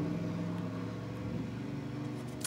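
A steady low mechanical hum, several low tones held evenly, with nothing else standing out.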